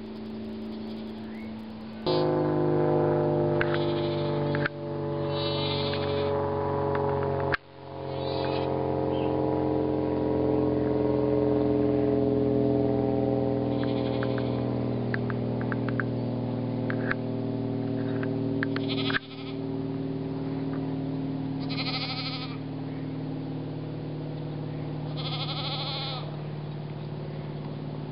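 Goats bleating several times, the later calls quavering, over background music of steady held chords.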